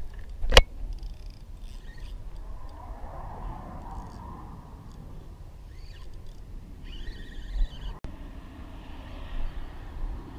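Low, steady wind rumble on the microphone while a fishing reel is worked against a hooked fish, with one sharp click about half a second in and faint scratchy rattles around seven seconds.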